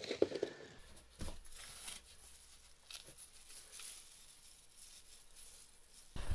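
Faint, intermittent rustling and scraping of hands in loose soil and a plastic seedling tray as lettuce seedlings are lifted out and planted, with a few short bursts in the first three seconds.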